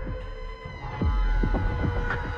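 Electronic synthesizer music: held synth chords over a deep, throbbing pulse of low thumps that drop in pitch, about two to three a second. The held chord shifts a little under a second in.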